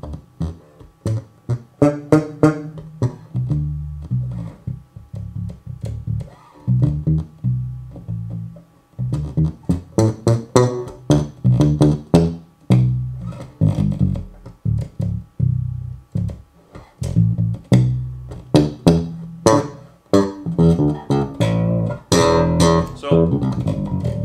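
Electric bass guitar played solo through an ISI Bass-O-Matic three-way bass cabinet (10-inch woofer plus 8-inch coaxial driver with compression horn). It plays a continuous line of plucked notes with sharp, percussive attacks, with a short break about eight seconds in.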